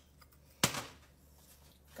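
A single sharp knock of kitchenware a little over half a second in, as chocolate frosting is loaded into a piping bag standing in a cup.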